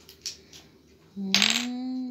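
A small wooden toy giraffe toppling over onto a table with a short clatter about a second in, followed by a drawn-out hummed 'hmm' from an adult voice.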